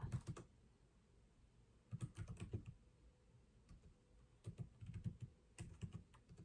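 Several short bursts of computer keyboard typing, clusters of key clicks with quiet gaps between them: one right at the start, one about two seconds in, and a longer run near the end.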